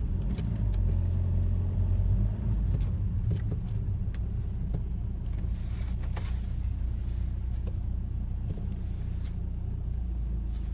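Car engine and road rumble heard from inside the cabin as the car creeps forward in stopped traffic: a steady low drone, a little louder in the first couple of seconds, with a few faint clicks.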